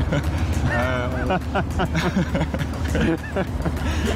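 Two men laughing, over the steady low drone of a motorboat's engine.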